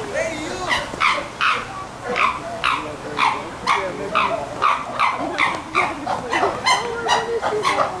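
Chimpanzee pant-hoot calls: a rhythmic series of breathy 'oh-ah' hoots, about two a second, going on steadily.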